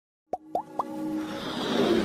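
Logo-intro sound effects: three quick pops about a quarter second apart, each sliding up in pitch and a little higher than the last, then a swelling whoosh over held synth tones.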